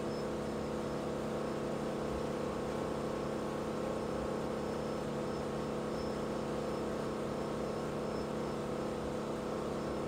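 Wake boat's inboard 6.2 L Raptor 440 V8 engine running steadily under load at wake-surf speed, a constant even drone over a steady hiss of water and wind.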